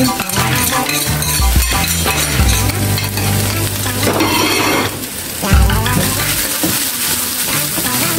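Ground beef sizzling as it fries in a pan, with a spatula stirring through it. Background music with a bass line plays underneath.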